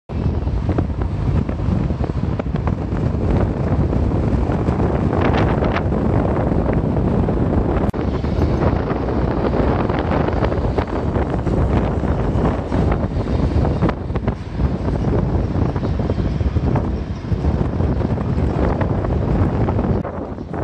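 Wind rushing and buffeting over the microphone of a phone filming from a moving car, with car and road noise underneath; loud and steady throughout.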